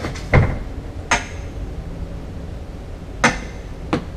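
Hinged upholstered seat panels on a boat being closed and pressed into place: a dull thump, then a few sharp clicks spread over the next three seconds, over a steady low hum.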